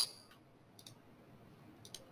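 A few faint computer mouse clicks, a pair a little under a second in and another pair near the end.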